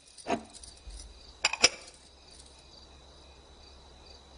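Quiet soundtrack ambience: a faint steady high-pitched trill with a soft chirp repeating a few times a second. A short knock comes just after the start and a couple of short, sharp clinks about a second and a half in.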